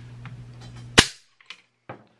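AK rifle's hammer snapping forward as the ALG AKT-EL trigger breaks under the pull of a trigger pull gauge: one sharp metallic click about a second in, followed by two faint clicks.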